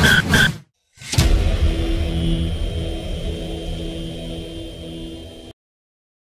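Outro logo sound effect: a loud rush of noise with two short high beeps breaks off into a brief silence. A sharp hit about a second in then trails into a long low rumble with a steady hum, fading slowly and cutting off abruptly near the end.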